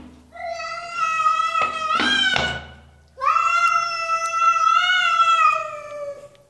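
A cat yowling: two long, drawn-out, wavering calls of about two to three seconds each, with a short pause between them.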